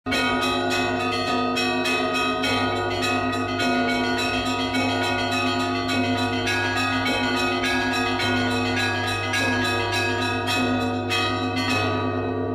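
Church bells ringing a rapid, continuous peal: many quick strikes on smaller bells over the steady hum of a deep bell.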